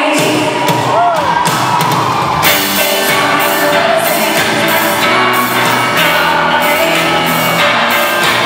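Live pop band with a female singer: the drums come in with a steady beat about two and a half seconds in, under the vocal. Near the start, a whoop rises and falls from the crowd.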